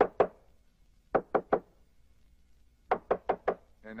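Knocking on a door in quick runs: a single knock at the start, three rapid knocks about a second in, then four more about three seconds in. A man's voice calls "Nena?" at the end.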